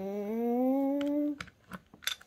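A person humming one long note that slowly rises in pitch and stops about one and a half seconds in, followed by a few sharp clicks.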